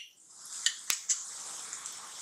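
Chopped onions and freshly added ground spices sizzling in hot oil in a pan, a steady high hiss with one sharp click a little under a second in.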